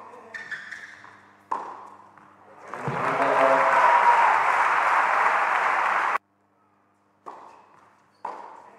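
Tennis ball struck with a racket, the last shot about a second and a half in, then a crowd in a hall applauding and cheering with a voice calling out for about three seconds, cut off suddenly. Two more sharp knocks near the end.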